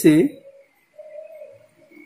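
A pigeon cooing once, a short low call about a second in, after two spoken syllables at the start. A faint steady high whine runs underneath.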